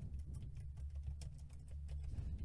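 Faint typing on a computer keyboard: a quick, uneven run of key clicks.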